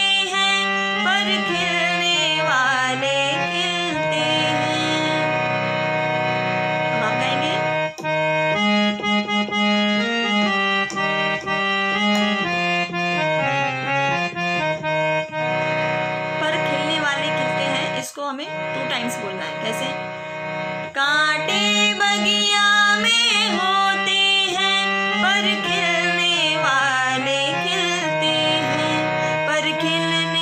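Harmonium playing the song's melody in sustained, reedy held notes, with a woman's voice singing over it in stretches near the start and through the last third. The sound dips out briefly about eighteen seconds in.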